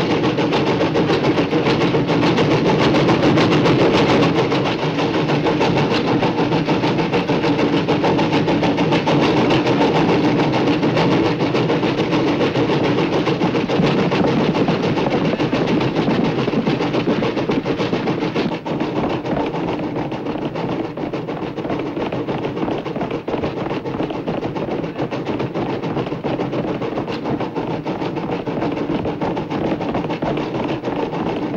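Steam locomotive under way: a loud, steady rush of noise with fast, dense clatter running through it, easing a little about 18 seconds in.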